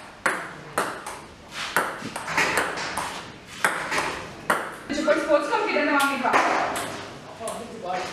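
Table tennis ball being hit back and forth in a rally: sharp clicks of ball on bat and table, roughly two a second. Voices talk over the second half.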